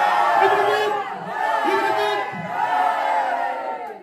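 A crowd of teenagers singing and shouting a party sing-along together, loud, in three long held phrases. The voices break off just before the end.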